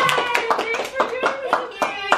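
Two people clapping their hands, about four or five claps a second, over a voice.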